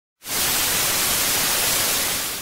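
Television static sound effect: a steady hiss of white noise that cuts in abruptly a moment after the start.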